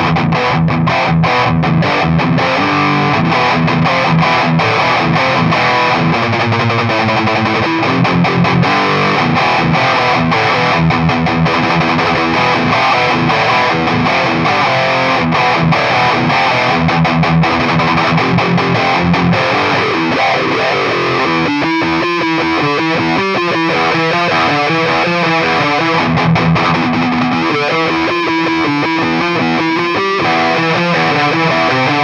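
Heavily distorted electric guitar through a Boss Metal Zone MT-2W pedal and a cabinet with V30 speakers, playing tight metal riffs of short, hard-stopped chords. About two-thirds of the way through, the riff turns choppier and more stop-start.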